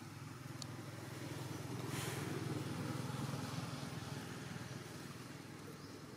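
A motor vehicle passing: a low engine rumble that swells to a peak about two to three seconds in, then fades away.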